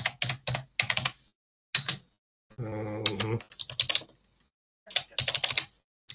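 Computer keyboard typing in quick bursts of several keystrokes, with short pauses between the bursts.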